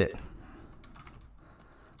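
A few faint clicks from a computer keyboard and mouse.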